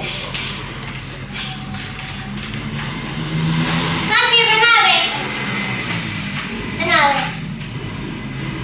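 Young children's voices: a short high-pitched call about four seconds in and another about seven seconds in, not words that can be made out. A steady low hum runs underneath.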